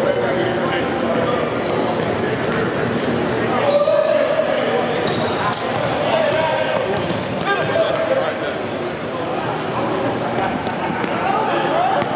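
A basketball being dribbled on a hardwood gym floor, with short high sneaker squeaks and the chatter of players and onlookers echoing through the large gym.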